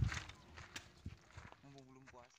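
Mostly quiet, with a few faint light taps or knocks spread through it and a voice briefly at the start and again near the end.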